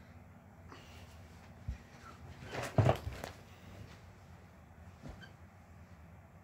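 A few dull thumps and a short noisy rustle of handling and movement: one thump a little under two seconds in, a louder rustle with knocks a little before halfway, and a fainter thump about five seconds in.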